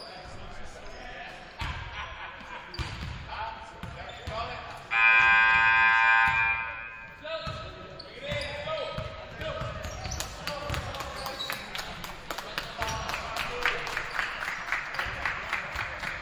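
Several basketballs bouncing on a hardwood gym floor in an echoing gym, with voices in the background. About five seconds in, a steady buzzer-like tone sounds for roughly two seconds, the loudest thing heard.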